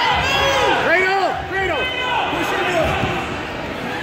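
Several voices shouting overlapping short calls in a large hall, with a few dull thumps.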